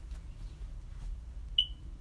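A single short, high-pitched electronic beep about one and a half seconds in, over a low steady hum.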